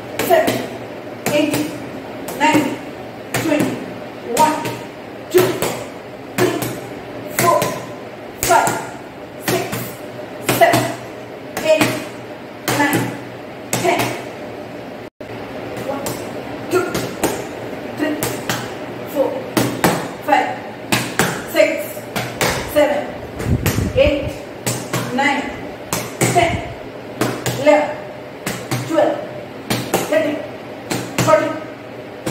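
Gloved punches smacking into a red padded target mitt in a rapid, steady series of about one to two strikes a second. Short vocal sounds come with many of the strikes.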